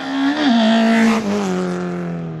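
Rally hatchback race car driven hard past at speed. Its engine note rises briefly, then falls steadily as it goes by and away, with a rush of tyre and engine noise as it passes about half a second in.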